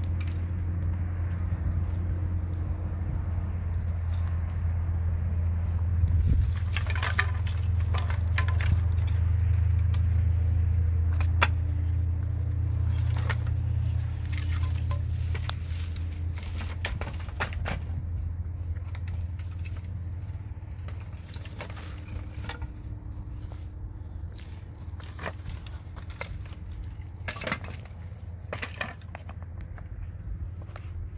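Low rumble of wind on the microphone, strongest in the first half and easing after about fifteen seconds. Through it come scattered sharp knocks and scrapes of wood and stones being handled, and steps on stony ground.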